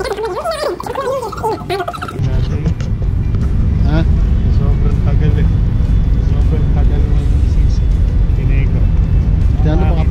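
Voices for about the first two seconds, then a sudden change to a loud, steady low rumble of wind buffeting the camera's microphone on an open street.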